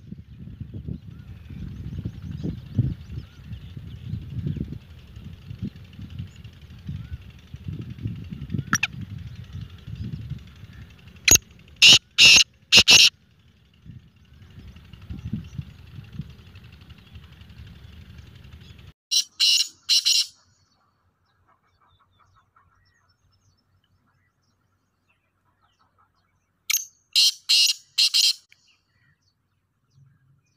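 Black francolin calling: three bouts of its loud, grating call, each a quick run of four or five harsh notes, about a third of the way in, two-thirds of the way in and near the end. A low rumble runs underneath until about two-thirds of the way through, then drops away.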